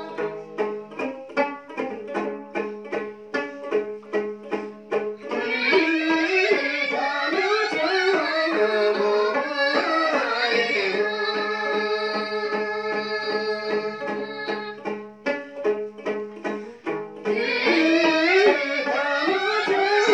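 A long-necked plucked lute (a dranyen) is strummed in a steady rhythm. About five seconds in, a group of women join it, singing a folk song together. Near the end the voices drop out briefly while the lute plays on, then come back in.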